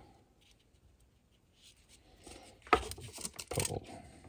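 Sheets of tracing paper rustling and crackling as they are handled, starting about halfway through, with two sharp crackles in the last second and a half.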